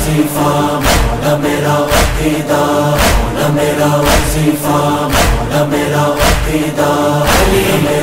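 A noha is playing: male voices chant long held notes on 'Ali' over a heavy percussive beat struck about once a second.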